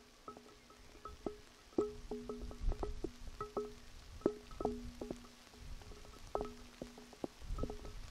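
Raindrops dripping onto something resonant close to the microphone: irregular taps, several a second, each ringing briefly at the same pitch, with a faint low rumble underneath.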